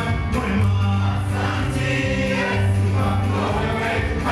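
Live gospel worship song: a man sings into a handheld microphone with choir voices, over a band whose bass line holds each low note for about a second.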